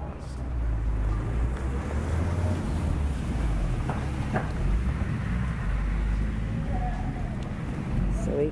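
Steady low rumble of background noise, with faint voices and two light knocks about four seconds in.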